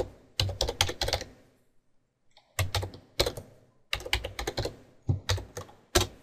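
Typing on a computer keyboard: several quick bursts of keystrokes with short pauses between them, and a single louder keystroke near the end.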